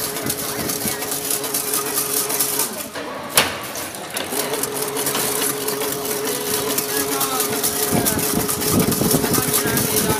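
Double-wire chain link fence making machine running: a steady mechanical drone with a held tone as the spiral forming blade turns, coiling wire into the mesh. The tone drops out for about a second, with one sharp click about three and a half seconds in.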